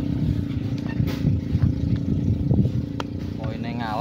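A steady low engine hum, with a faint sharp click about three seconds in.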